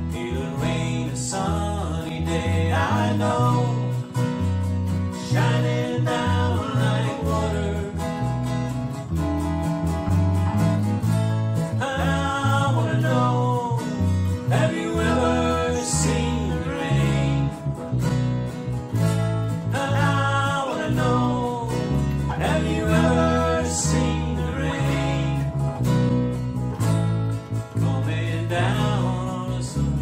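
Country-rock band music: strummed acoustic guitars over a bass guitar line at a steady mid tempo, with a voice singing in some phrases.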